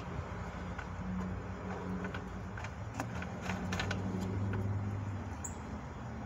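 Light clicks and scrapes of an aluminum oil filler cap being twisted onto an engine's oil filler neck by hand, over a steady low hum.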